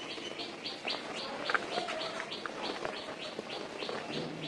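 Dry cement powder and small lumps crumbling and sifting through fingers into a plastic tub: a soft hiss with small gritty clicks. A bird chirps over it, a short high chirp repeating about four times a second.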